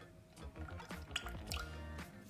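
A thin stream of liquid egg white pouring and dripping into a non-stick saucepan, stopping by the end, with background music playing over it.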